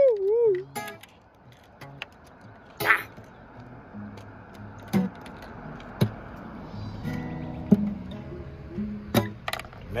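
Acoustic guitar played sparsely: a few sharp strums and plucked notes, with chords ringing on from about seven seconds in. A sung note trails off in the first moment.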